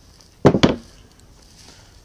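Two quick metal knocks close together about half a second in, from a steel hammer and punch being handled at an anvil.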